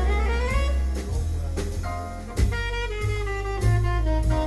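Live jazz quartet: tenor saxophone soloing over piano, double bass and drum kit with cymbals. The saxophone plays a quick rising run at the start, then longer held notes that step downward.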